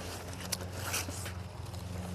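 Quiet steady low hum with faint handling noises and a small click about half a second in.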